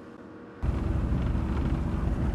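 Loud rumbling noise of wind buffeting the microphone and an engine running on a moving motorboat, cutting in suddenly about half a second in after a brief quiet moment.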